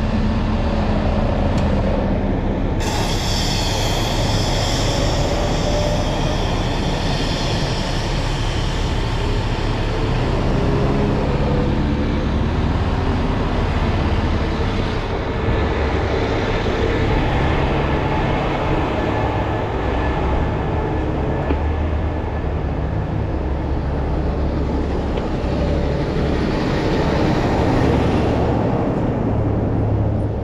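Heavy-duty tow trucks' diesel engines running steadily, a deep rumble with a wavering drone. A hiss starts suddenly about three seconds in and dies away over the next several seconds.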